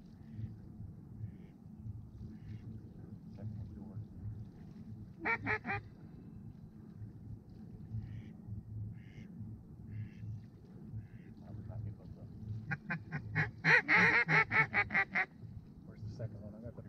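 Geese honking: a short burst of three honks about five seconds in, then a fast run of loud honks and clucks near the end, with faint calls scattered between.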